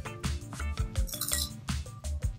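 Crisp fried jalebi crunching as it is bitten and chewed, a quick run of sharp crackles, over background music with a steady beat.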